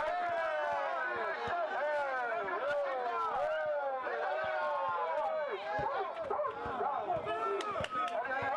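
Crowd of spectators around a basketball court talking and calling out over one another, with scattered short knocks of a basketball being dribbled on the court.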